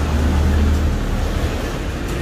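Noodles slurped off a spoon, over a steady low rumble that is loudest in the first half second or so.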